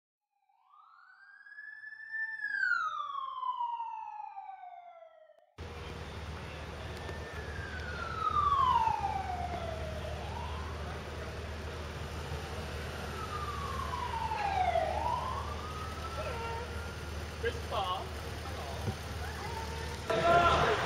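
A single clean, siren-like tone rises and then falls slowly over silence. About five seconds in it cuts to street noise, where a police motorcycle siren sweeps down and back up twice over steady traffic hum.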